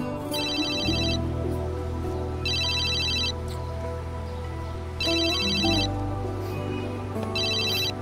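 Mobile phone ringtone: four short trilling rings a little over two seconds apart, heard over sustained background music.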